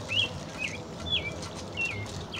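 A bird calling in a run of short, high chirps, repeated about twice a second.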